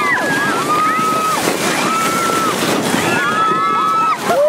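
Sledders letting out long, high-pitched cries over the steady rushing scrape of a sled sliding fast down a snow slope, with wind buffeting the microphone.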